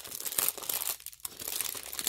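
Small clear plastic bags of diamond-painting rhinestone drills crinkling as they are handled, with a brief lull about a second in.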